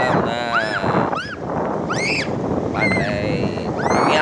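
Wind buffeting the microphone in a steady rush. Over it come about six short, high-pitched calls that each rise and fall within a second.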